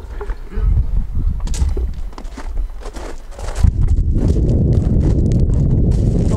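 Footsteps and knocks on a hard floor or porch as people walk out of a house. About halfway through, a loud steady rumble of wind on the microphone sets in as they step outside, and the footsteps go on under it.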